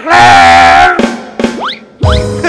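Comedy-show musical sting: a loud held note over a low drum rumble for about a second, then quick rising boing-like glides.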